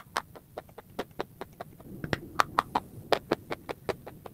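Close-miked crunching as a dry, chalky white lump is chewed: a quick run of sharp crunches, about three or four a second, loudest around the middle.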